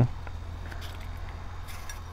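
A steady low hum with a few faint, short clicks, about a second in and again near the end, as pepper pieces are handled.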